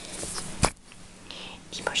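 A person whispering, with one sharp knock a little over half a second in.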